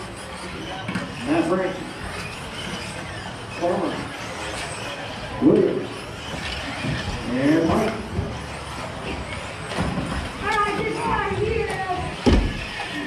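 Indistinct voices in a large hall, heard in short phrases every second or two over a steady background noise.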